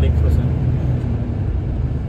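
Steady low rumble of a bus engine heard from inside the passenger cabin.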